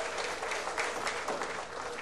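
Audience applauding a won rack of nine-ball, the applause slowly fading.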